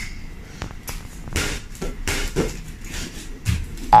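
Irregular light knocks and thumps, a dozen or so spread unevenly over the seconds, from a child's bare feet and a small toy basketball on a tiled floor. A brief child's exclamation comes right at the end.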